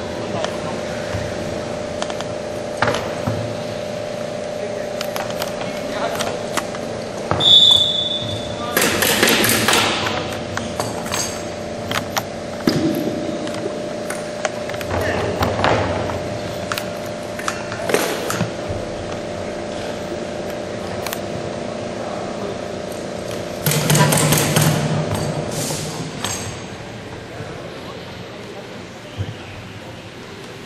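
Wheelchair rugby play in a sports hall: scattered knocks and clatter of the players' wheelchairs and the ball, a short referee's whistle about eight seconds in, and voices shouting in bursts, over a steady hum from the hall.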